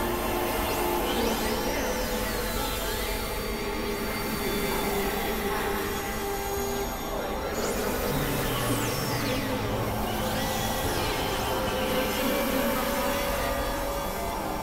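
Experimental electronic noise music: a dense, steady synthesizer drone of many held tones, with high sweeping tones that glide up and down several times.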